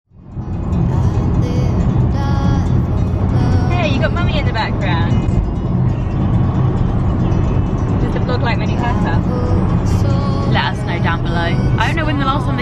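Steady low rumble of road and engine noise inside a moving car's cabin, with music and voices heard over it.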